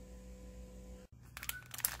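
Quiet room tone, then after an abrupt cut about halfway, plastic packaging crinkling in the hands.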